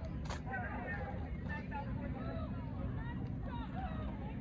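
Voices of people talking in the background, too far off to make out, over a steady low rumble. A single sharp click comes about a third of a second in.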